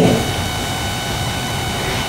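Steady room noise: an even hiss with a few faint, high, steady tones running through it.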